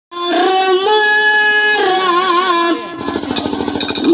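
A woman singing a Kannada dollina pada folk song through a microphone, holding long notes that waver in places. About three seconds in, a fast, even drumbeat starts under a held note.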